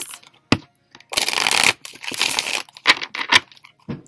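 A deck of tarot cards shuffled by hand: two rushes of riffling cards in the middle, with a few sharp clicks before and after.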